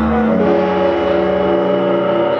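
Ambient guitar drone: several sustained notes held and overlapping at a steady level, with a deep low tone that drops out about a third of a second in.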